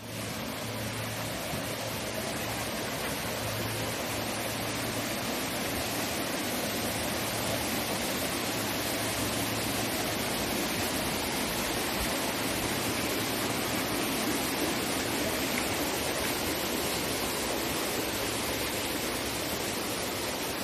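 Steady rushing of a mountain stream: an even, unbroken hiss of running water.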